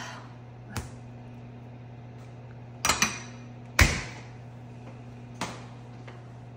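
Four scattered short knocks and clicks over a steady low hum, the loudest a thud a little past the middle.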